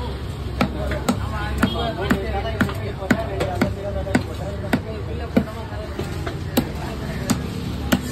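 Heavy chopping knife striking through tuna flesh into a wooden log block, sharp chops about two a second that space out after about four seconds.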